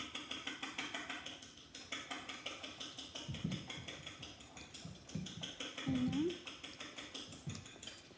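A child's short closed-mouth "mm" hums while eating toast, a couple of them, over a fast, even high ticking.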